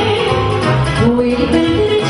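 Live Romanian party music (muzică de petrecere) played by a band: an instrumental melody stepping up and down over a steady bass line.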